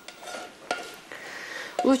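A utensil scraping and clinking against a heavy frying pan as fried onion is moved into a salad bowl, with one sharp clink less than a second in.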